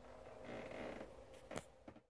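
Faint rustling and movement noise, swelling slightly about half a second in, with two light clicks near the end.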